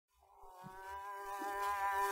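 Harmonium holding one steady reedy note that fades in and swells, as the opening of a ghazal on an early 78 rpm shellac gramophone record, with a couple of soft low thumps underneath.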